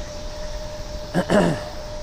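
Steady rush of wind and tyre noise from a bicycle rolling along a paved path. A brief wordless vocal sound from the rider comes about a second in, falling in pitch.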